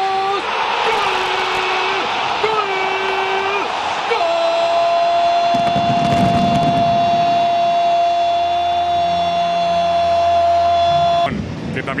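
A football commentator's goal cry: shorter shouted calls, then one long drawn-out "gol" held on a single steady pitch for about seven seconds that cuts off suddenly, with crowd noise underneath.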